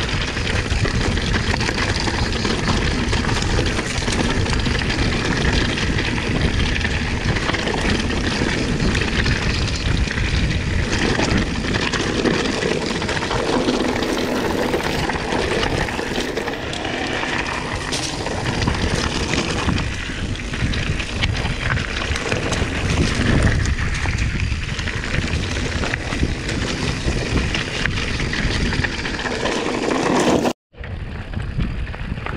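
Electric mountain bike riding rocky dirt singletrack: tyres crunching over gravel and stones, with a steady run of small knocks and rattles from the bike over the bumps.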